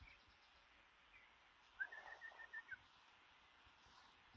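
A bird calling faintly: one quick run of about seven short, even notes about two seconds in, with a couple of single chirps before it.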